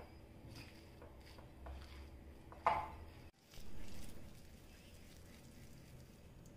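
Faint mixing of chana dal vada batter in a glass bowl: a metal spoon stirring and clicking against the glass, with one sharper click a little before the middle, then softer hand mixing of the batter.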